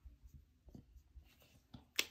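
Dry-erase marker writing on a whiteboard: a few short, faint strokes, then a sharp click at the very end.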